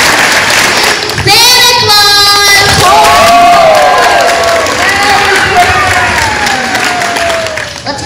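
Audience applauding and cheering, with a performer's voice calling out over it from about a second in in long drawn-out notes, the last one gliding down in pitch.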